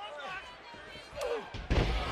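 Faint arena background, then about one and a half seconds in a single heavy thud as a wrestler's body slams onto the ring mat.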